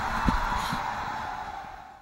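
Noise of a Matterhorn-style fairground ride running, with a couple of low thumps in the first second, fading out steadily to silence.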